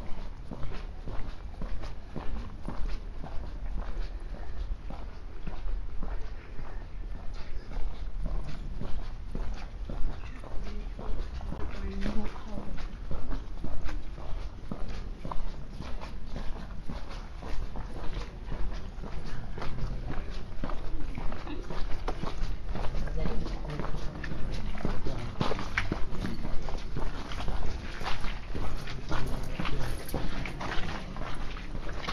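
Footsteps of someone walking, irregular short knocks over a low rumble, with other people's voices talking in the background.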